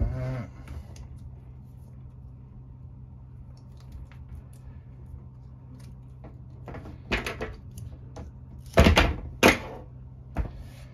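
Hands handling stripped fiber optic cable and tools on a worktable: faint ticks and rustles, then a few loud handling knocks and rustles in the last three seconds, over a steady low hum.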